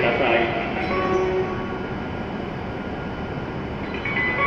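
Steady hum and rush of a Hokuriku Shinkansen train standing at the platform with its equipment running, slowly easing in level, heard in a reverberant station.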